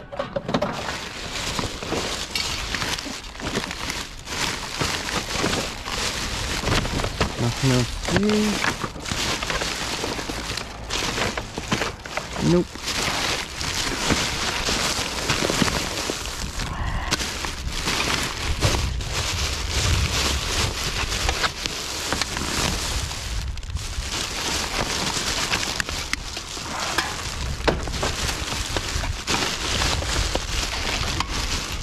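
Plastic garbage bags rustling and crinkling as gloved hands rummage through a wheelie bin, with a steady run of small crackles and knocks.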